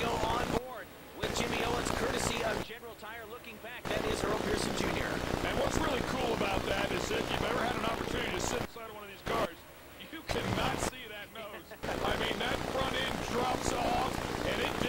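A field of dirt late model race cars with V8 engines running hard at speed, loud and dense. The sound drops away suddenly three times, about a second in, near three seconds, and for about three seconds around the ten-second mark.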